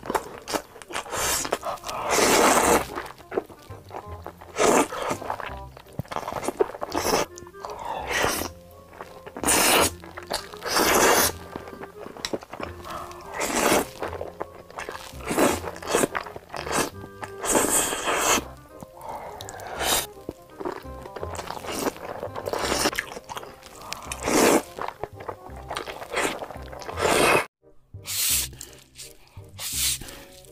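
Close-miked eating sounds: noodles slurped and chewed, with crunching bites, coming in irregular bursts every second or two over background music.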